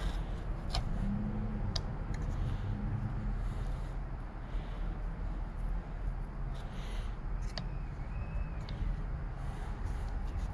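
Steady low background rumble, with a few light clicks and taps as a dauber and can of PVC cement are handled while the pipe joint is coated.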